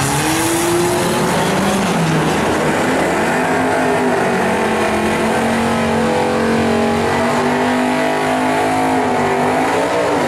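Two street cars, one a Chrysler 300, launching side by side in a drag race, engines at full throttle. The engine pitch climbs, drops at a gear shift about two seconds in, then pulls steadily higher as the cars run down the track.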